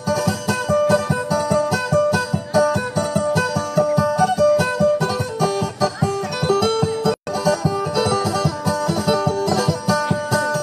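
Fast-picked plucked-string instrumental music, a busy melody of short notes over a steady low beat. The sound cuts out for a split second about seven seconds in.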